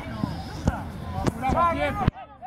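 Footballers shouting to each other on the pitch, with three sharp kicks of the ball: the first under a second in, the other two close together a little later.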